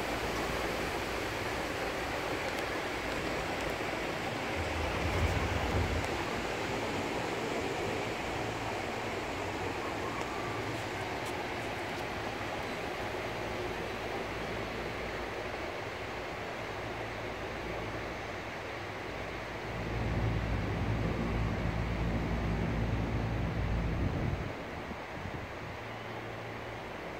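Steady rush of wind and air noise from riding in an open-sided cabriolet lift cabin. There is a louder low rumble about five seconds in, and a longer one from about twenty seconds in that drops away shortly before the end.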